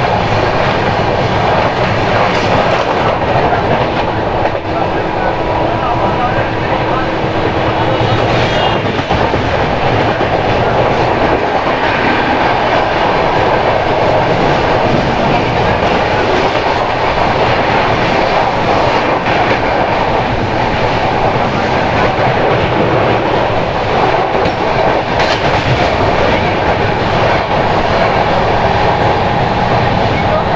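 Express passenger train running at speed, heard from an open coach doorway: a loud, steady rumble and rush of wheels on the rails.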